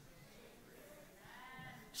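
Near silence: room tone, with a faint drawn-out voice from the room a little over a second in.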